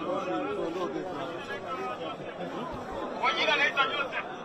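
A crowd of people talking over one another, with one voice rising louder shortly after three seconds in.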